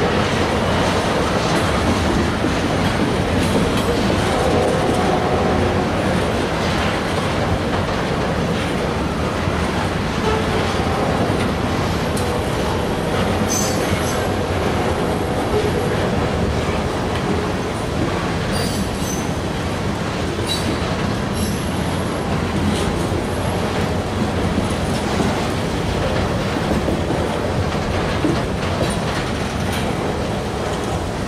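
Freight train cars rolling along the rails in a steady, continuous rumble, with brief faint high wheel squeals in the middle stretch.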